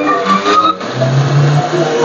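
Electric juicer's motor running as it extracts kinnow juice, under background music.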